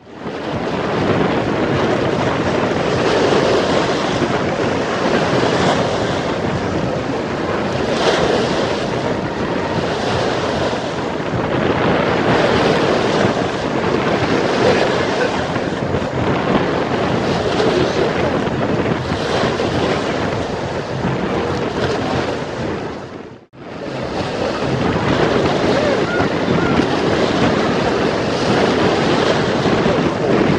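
Strong wind buffeting the microphone over choppy waves washing and breaking against a concrete shoreline, a loud, steady rush. It drops out briefly about three-quarters of the way through.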